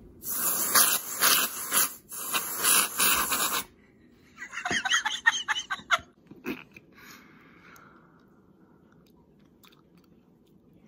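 Aerosol can of whipped cream spraying onto a mug of hot chocolate: two long hisses in the first few seconds, then a spluttering, crackling burst around the middle as more cream is squirted out.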